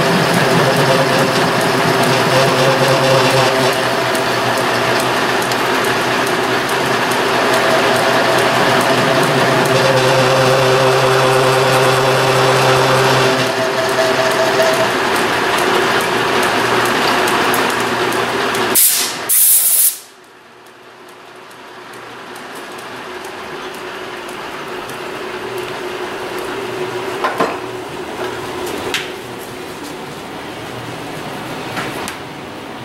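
Hamilton metal lathe running under power, its gearing giving a steady whine with several held tones while the tool turns down steel bar stock. About nineteen seconds in come two brief, sharp hissing bursts, and then the lathe's running sound cuts off abruptly. A much fainter steady noise follows, with a few light clicks near the end.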